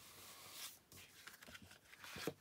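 Near silence, with faint rustling of card stock being pressed down and handled.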